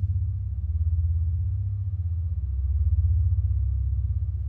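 A low, steady rumbling drone from the trailer's music score, swelling slightly about three seconds in.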